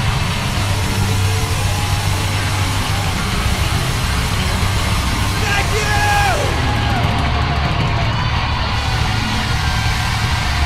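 Live hard rock band playing at full volume: distorted electric guitar over bass and a drum kit, dense and continuous, with a few sliding pitched notes about the middle.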